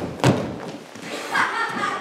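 A single heavy thump about a quarter second in, a footstep on the hall's wooden floor as a costumed performer runs past, followed by a young performer's voice.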